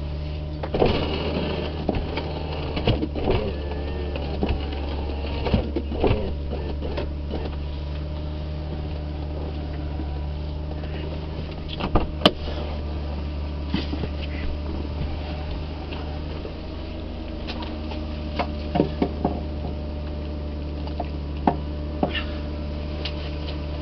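Car idling while it warms up, a steady low hum, with scattered scrapes and knocks of ice being scraped off the frosted windows, in clusters about a second in, around the middle and near the end.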